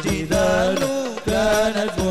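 Male lead voice singing a long, ornamented Arabic sholawat (Islamic devotional song) through a PA, with the voice bending and holding notes, over hadroh frame-drum strokes.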